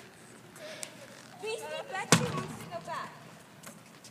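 Faint voices of a group of people talking, with one sharp knock about halfway through.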